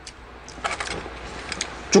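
Light crackling and clicking of a thin clear plastic food container being handled, a run of small crackles starting about half a second in.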